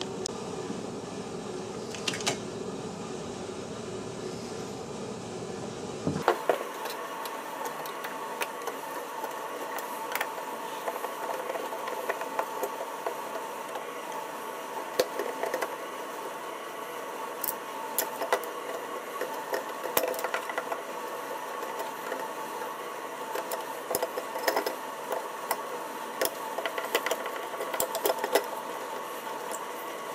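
Scattered clicks, taps and scrapes of a flat-blade screwdriver and fingers working on an old Trane wall thermostat's plastic housing and metal terminal screws, over a steady hum that changes abruptly about six seconds in.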